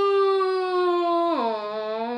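A boy's voice holding one long drawn-out 'Nooooo!' cry, its pitch sliding slowly down, then dropping sharply about one and a half seconds in and held at the lower pitch.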